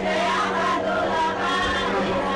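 Several voices singing together in a chant-like group song, over a steady low hum.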